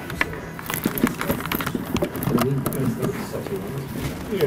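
Scattered sharp clicks and light knocks from handling cables and equipment at a lectern. A man's low voice muttering under his breath about two seconds in.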